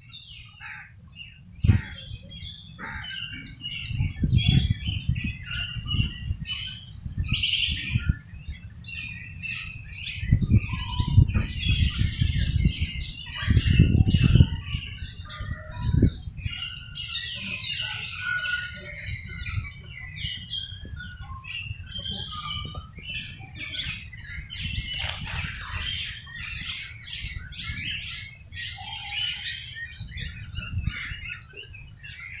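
Many birds chirping and calling without pause, a busy chorus of short high calls. Under them run irregular low rumbles on the microphone, loudest a little before the middle.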